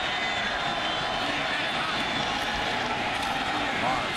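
Large stadium crowd making steady noise, many voices blending into one even din.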